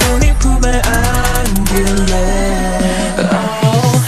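K-pop track pitched down to give a male-sounding vocal: a held sung line over fast hi-hat ticks. Toward the end the bass drops out and a rising sweep builds into the next section.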